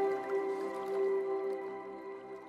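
Background music: a sustained ambient chord, fading out.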